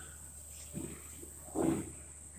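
A man makes two short wordless vocal sounds over quiet room tone: a faint one just under a second in and a louder one near the end.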